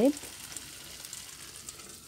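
Eggs and tomato sizzling in a baking dish over the stove flame: a steady, quiet hiss with faint scattered crackles as they cook.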